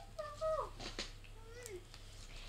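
A child's high, whining, meow-like voice, put on to act a spoiled child. It comes in drawn-out calls that slide down in pitch, one about half a second in and another near the end.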